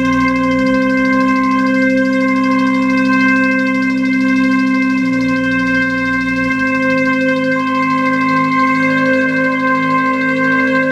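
Electronic music from a modular synthesizer: a sustained drone of steady high tones held over a low bass part. The low part shifts to a new pitch about half a second in, again at about five seconds, and once more around six and a half seconds.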